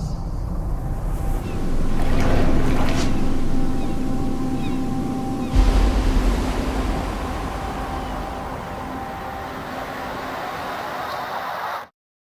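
A steady rushing noise like surf, with a faint low hum and a deep thud about halfway through. It cuts off suddenly just before the end.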